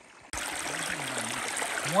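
Running water of a small spring-fed creek, a steady rush that cuts in suddenly about a third of a second in.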